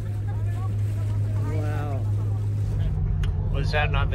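A boat's engine droning steadily on deck, with a short voice over it. About three seconds in the sound changes to a lower engine hum inside the cabin, and a man starts talking.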